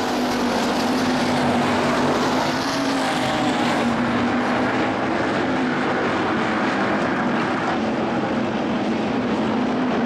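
IMCA Hobby Stock race car's V8 engine running at a steady, even pitch as the car cruises around a dirt oval after the race.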